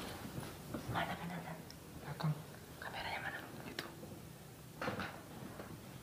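Low whispering and hushed voices, a few short breathy phrases in a small room.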